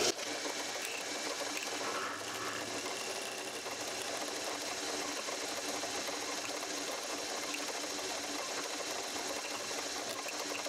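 Drill press running steadily with an even motor hum while a small twist drill bores a cross hole through stainless steel threaded rod held in a drilling jig.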